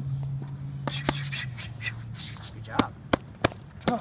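Boxing gloves smacking leather focus mitts: about six sharp separate hits, with a quick run of the loudest ones near the end.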